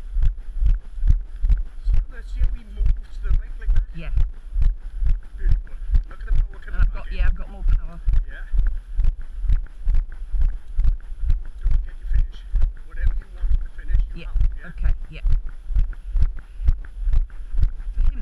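Walking footsteps jolting a body-worn camera: a steady run of low thuds at about two steps a second, at an even walking pace.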